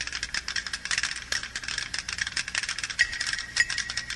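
A dense, irregular rattling clatter of quick clicks that starts suddenly.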